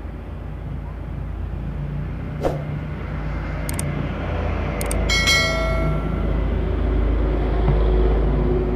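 Inverter welding machine's cooling fan running with a low steady hum that grows a little louder in the second half, and a single sharp click about two and a half seconds in. Midway come two mouse clicks and a bell chime from a subscribe-button sound effect.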